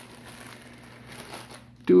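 Faint, soft crinkling of a clear plastic bag being handled.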